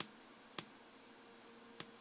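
Faint, short clicks as the right-arrow button on a TomTom GPS touchscreen is tapped repeatedly, three clicks spaced roughly half a second to a second apart, with the menu pages turning.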